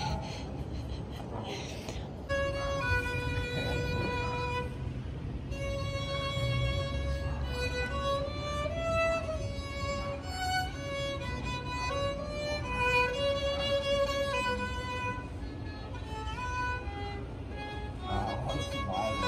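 Solo violin played live: a melody of long held notes with slides between them, starting about two seconds in.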